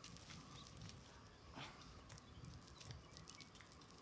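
Near silence: quiet room tone with a few faint soft clicks, one a little louder about one and a half seconds in.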